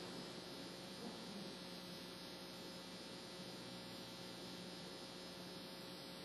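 Faint steady electrical hum with hiss and a few held tones, with no voice over it.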